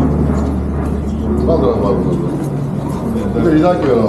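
Indistinct talk from several men around the auction counter, with a steady low hum underneath that weakens about halfway through.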